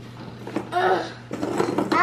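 A toddler's voice: a short vocal sound about half a second in, then the start of an exclaimed 'oh' right at the end.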